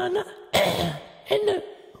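A voice cuts off a drawn-out 'ö' and then makes a harsh, throat-clearing rasp about half a second in. A short high 'ö' vowel follows and fades out.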